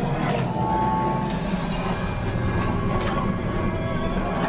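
Music and spaceship sound effects from a theme-park flight-simulator ride's soundtrack, steady and fairly loud, as the ship makes the jump to light speed.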